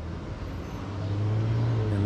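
Low hum of a motor vehicle running, swelling about a second in.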